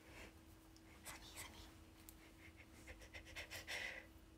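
Faint breathing from a young woman, in a few soft breathy puffs, over a steady low electrical hum.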